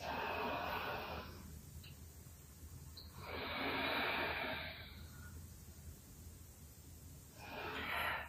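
A woman breathing audibly through a slow stretch: a soft breath at the start, a longer, stronger breath from about three to five seconds in, and another starting near the end.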